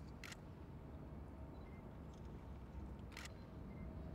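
Two short, sharp clicks about three seconds apart, over a faint low outdoor rumble.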